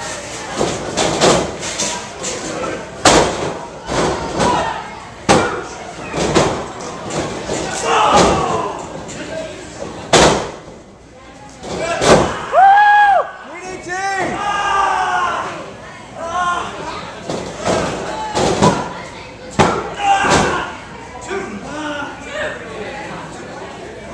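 Wrestling ring action: a string of sharp slaps and thuds from strikes and bodies hitting the ring mat, mixed with shouting voices and a small crowd, including one long loud yell about twelve seconds in.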